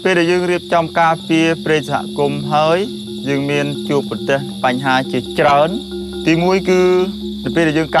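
Forest insects keeping up a steady, high, even drone, with a person talking in short phrases over it.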